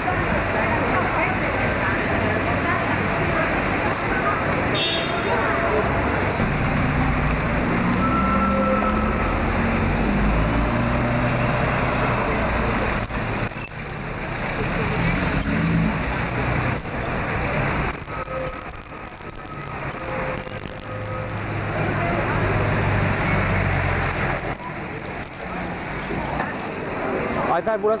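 Busy city street traffic: a steady low rumble of vehicle engines idling and passing, mixed with the voices of passers-by.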